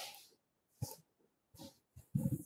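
Faint breaths and small mouth noises from a person pausing between words, with one short click a little under a second in.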